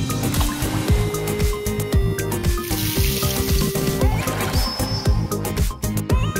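Background music with a steady beat and held melody notes, cutting in abruptly.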